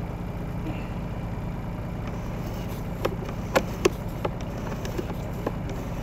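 Steady low engine hum, like an idling motor, while a sewer inspection camera's push cable is pulled back out of the pipe, with a few sharp clicks a little after three seconds in and near four seconds.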